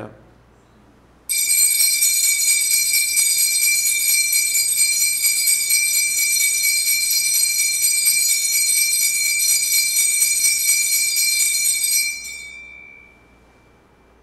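Altar bells rung at the elevation of the chalice during the consecration: a steady, high, shimmering ringing that starts suddenly about a second in, holds for about eleven seconds, then stops and dies away near the end.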